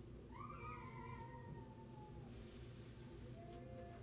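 A faint, drawn-out pitched call that slides slowly down in pitch over about two seconds, followed near the end by a shorter, fainter call.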